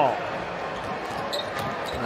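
Basketball being bounced on a hardwood court during a fast break, over a steady low hum of arena ambience.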